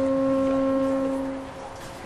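Marching band brass section holding one long sustained note, which fades away about a second and a half in.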